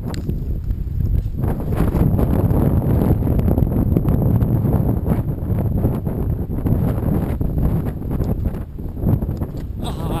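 Wind buffeting the camera microphone: a loud, steady low rumble throughout.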